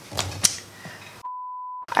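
A single steady high bleep tone, about half a second long, with all other sound cut out around it: a censor-style bleep edited into the soundtrack. A few short mouth clicks come before it.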